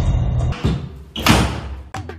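Background music cuts off, then two heavy thuds, the second louder, as a sofa's padded armrest block is kicked loose from the frame.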